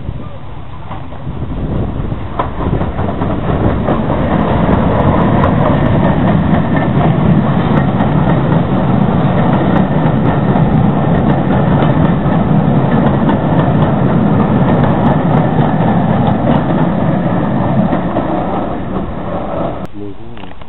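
A train of passenger coaches passing close by, the wheels running on the rails. The sound builds over the first few seconds, holds steady, and fades near the end.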